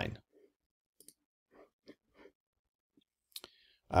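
A few faint, short computer mouse clicks spread over a couple of seconds, followed by a single sharper click about three and a half seconds in.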